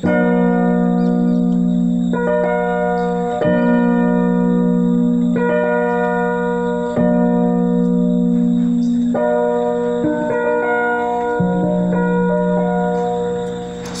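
Electronic keyboard playing a sequence of held chords in the key of F, both hands, moving between different positions (inversions) of the chords. Each chord holds steady without fading over a sustained bass note, changing about every one to two seconds.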